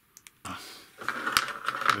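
Small plastic kit parts handled and pressed together: a couple of light clicks, then a run of plastic clicking and scraping in the second half, with one sharp click as a cap is fitted onto a lever-control piece.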